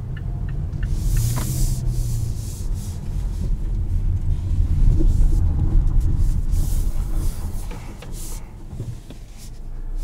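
Low-speed in-cabin sound of the Mazda CX-5's 2.5-litre turbo four-cylinder with road and tyre noise, a steady low rumble that quietens near the end as the SUV slows.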